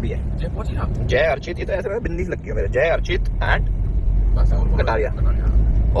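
Steady low rumble of a car heard from inside the cabin, under bits of men's talk.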